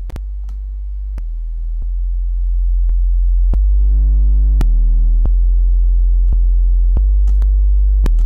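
Synth sub-bass sine tone held as one deep steady note, getting louder, while Fruity WaveShaper distortion is slowly raised on it. From about three and a half seconds in, a ladder of overtones builds above the low note, the distortion adding harmonics without crunchy high end. Faint clicks occur here and there.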